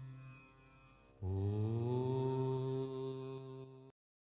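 A devotional chant as a background track: a deep voice holding a long chanted note that fades away. About a second in a new held chant starts, rising a little in pitch as it begins. It cuts off abruptly just before the end.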